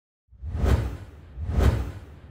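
Two whoosh sound effects of a logo animation, each swelling and fading with a deep low rumble, about a second apart.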